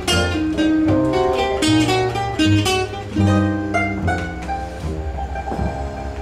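Banjo and acoustic guitar playing an instrumental passage of a blues tune together: quick picked notes over a line of low bass notes.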